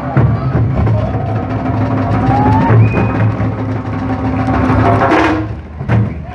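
Tahitian drum ensemble playing a fast, dense rhythm for ʻori Tahiti dancing: wooden slit drums (toʻere) over a deep bass drum (pahu). The drumming breaks off just before the end.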